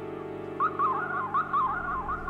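Electronic synthesizer music: a sustained synth drone, joined a little over half a second in by a louder lead synthesizer tone that swoops up and down in quick, repeated glides.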